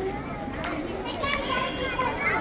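Many children's voices chattering and calling out at once, with some adult speech mixed in.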